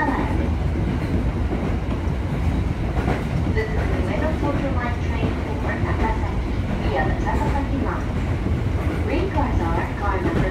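Local commuter train running, heard from inside the passenger carriage: a steady rumble from the wheels, rails and running gear.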